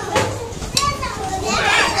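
A group of young children talking and calling out at once in a classroom.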